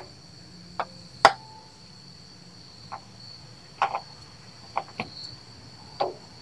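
Scattered light clicks and knocks as a bleeder bottle's hose is worked onto the bleeder screw of a rear brake caliper, the loudest about a second in, over a steady high-pitched whine.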